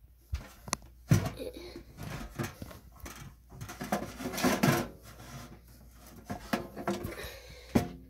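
Objects being handled and moved on a wooden pantry shelf: scattered knocks, taps and rustles of tins and containers, with a sharper knock about a second in and a busier run of clatter around the middle.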